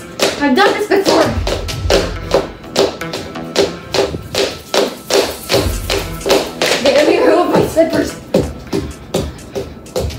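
Rhythmic tapping and thudding steps, about three a second, from feet striking the floor during a fast cardio exercise. Background music with vocals plays underneath.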